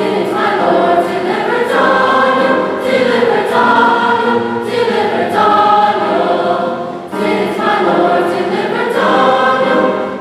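Large choir singing in parts, coming in right at the start over piano music, with a short dip between phrases about seven seconds in.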